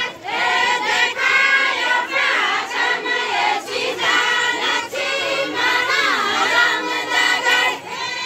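A group of women singing a Kumaoni jhoda folk song together as they dance, in sung phrases with short breaks between them.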